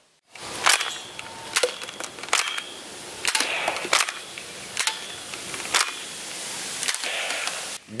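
Blaze Storm toy foam-dart pistol being fired at targets: a string of sharp snapping clicks, roughly one a second, over a steady outdoor hiss.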